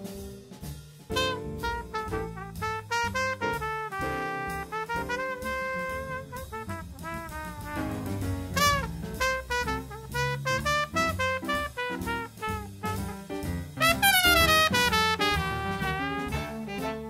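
Swing jazz recording: brass, trumpet and trombone lines with bending notes over a drum kit's steady beat, rising to a loud, bright high brass passage about fourteen seconds in.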